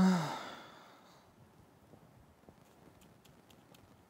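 A person sighing: one voiced out-breath that starts loud and falls in pitch as it fades, lasting about a second.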